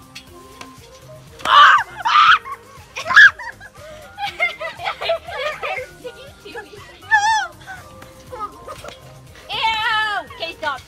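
Girls laughing and shrieking, with the loudest outbursts in the first few seconds and wavering giggles later on.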